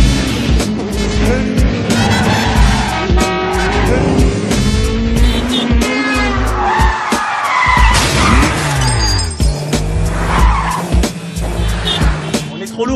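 Car-chase soundtrack: car engines revving hard, with pitch rising and falling through the gears, and tyres skidding and squealing, over action music with a steady beat.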